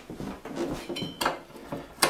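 A few light clinks and knocks as a screwdriver is picked up and set to a cover screw of a TriStar charge controller, one of them with a brief metallic ring about a second in.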